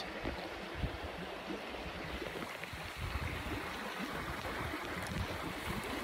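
Steady rushing of a creek running high after rain.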